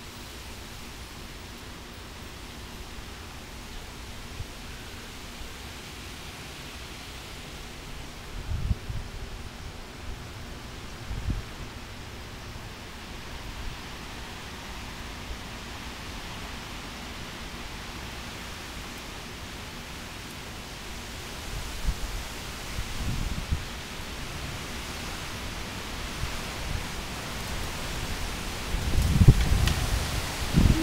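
Storm wind rushing steadily through leafy trees, with a few gusts buffeting the microphone as low thumps, coming more often near the end.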